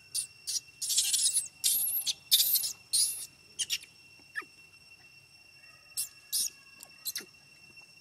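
Baby macaque screaming in a run of shrill, high-pitched squeals, several long ones close together in the first three seconds, then a few short squeaks later. It is the infant crying in fear as an older monkey grabs at its mouth for candy.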